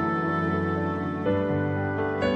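Slow, soft relaxation music on piano: held chords, with one new chord coming in a little past halfway.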